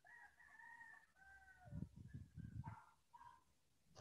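A rooster crowing faintly, a drawn-out call held steady for about a second, then a second part that drops in pitch. Low thumps follow about halfway through.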